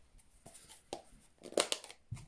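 Small handling sounds of craft supplies: a light tap about a second in, then a short cluster of louder scuffs and clicks near the end as an ink pad is brought in beside the stamp block.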